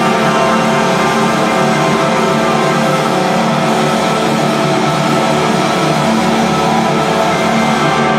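Live rock band with loud distorted electric guitars holding a dense, steady wall of sustained noise and drone, with no clear drumbeat.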